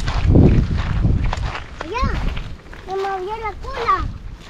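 Children's voices giving short, high-pitched calls without clear words, over a low rumble of wind on the microphone and footsteps on a dirt path.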